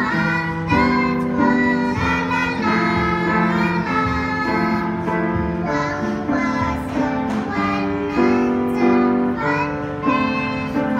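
Young girls singing a song together in unison, accompanied by a piano played in chords and held notes.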